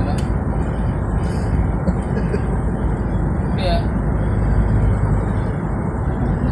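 Steady engine and road rumble of a vehicle driving along a road, heavy in the low end, with a brief voice about two-thirds of the way in.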